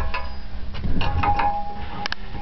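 Sharp metallic knocks of a hand tool working against a heating pipe at floor level. The strike about a second in leaves the metal ringing with a clear tone, over a steady low hum.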